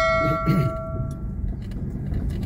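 A single bell-like chime rings out and fades away about a second and a half in, over the steady low rumble of a car driving.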